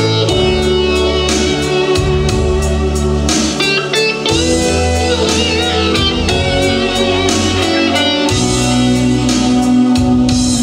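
Instrumental introduction of a pop song played from a backing track, with guitar to the fore over sustained bass notes and a regular beat.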